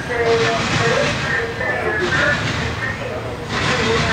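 Intermodal freight train passing close by: a steady, noisy rolling of steel wheels on the rails as the trailer-carrying cars go past.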